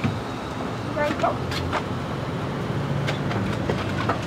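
Steady low hum of an idling SUV and outdoor background noise, with a brief voice about a second in and a couple of faint clicks.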